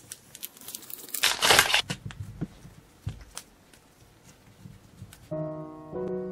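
Plastic wrapper of a packet of paper clay crinkling and tearing as it is handled and opened, loudest about a second and a half in, then scattered small clicks and rustles. Piano music starts near the end.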